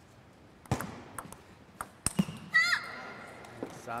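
Table tennis ball clicking off paddles and the table several times in the first half, then a short high-pitched sound with a falling pitch.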